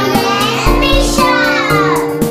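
Children's voices singing over upbeat music with a steady beat, one voice sliding down in pitch near the end.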